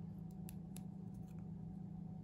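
Faint ticks and light crackles of a small cardstock bow and double-sided red liner tape being wrapped and pressed between fingers, over a steady low hum.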